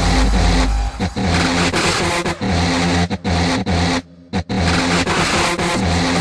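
Dark hardstyle track: dense distorted synths over a repeating pulsing bass line, chopped by short gaps, with a brief cut-out of nearly all sound about four seconds in.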